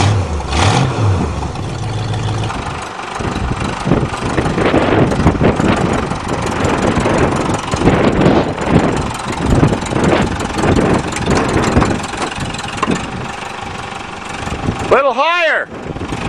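Front-end loader tractor's engine running under load as its bucket lifts the front of a car off the ground.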